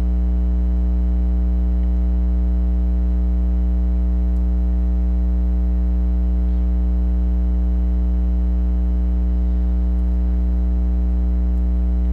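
Loud, steady electrical mains hum with a buzzy series of overtones, running unchanged and without any break.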